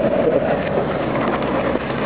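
Exhaust of an idling Mitsubishi Outlander's 3.0-litre V6, heard up close at the tailpipe as a steady rushing hiss.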